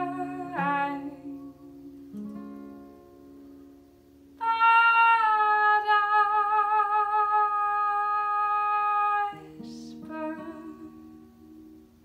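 A woman singing with her own acoustic guitar: a sung phrase ends, the guitar rings on, then she holds one long note with vibrato for about five seconds, takes a breath, and a last soft guitar chord fades out to end the song.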